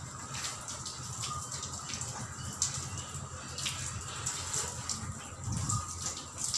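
Water from a garden hose running and splashing against a metal window grille and tiled floor, with irregular spattering.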